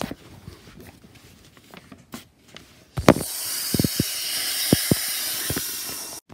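A steady hiss, lasting about three seconds from about halfway through and then cutting off abruptly, most likely a magic-effect sound added in editing, with a few low thumps under it. Before it, soft knocks from paper and toys being handled.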